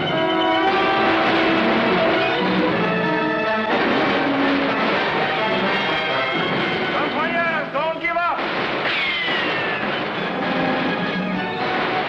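Orchestral film score playing loudly through a musket battle, with voices shouting over it and a falling whine about nine seconds in.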